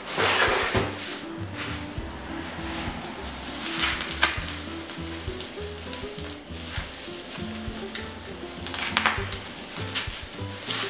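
Plastic bubble wrap crinkling and crackling as it is pulled apart and slit open with a scalpel, in bursts at the start, about four seconds in and near the end, over background music.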